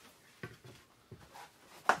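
Light knocks and clatter of kitchen containers being handled while almond creamer is transferred into a jar, with one sharp knock just before the end.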